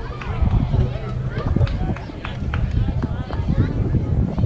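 Several voices shouting and cheering over one another, spectators and players yelling while a batted ball is in play at a youth baseball game, over a low steady rumble.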